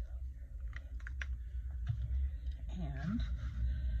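A few light clicks and taps from handling a spiral-bound art journal and pen on a work table, then a brief murmur of voice about three seconds in, over a steady low hum.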